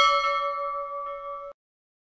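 A single bell chime sound effect: one struck bell tone that rings and fades, then cuts off abruptly about one and a half seconds in.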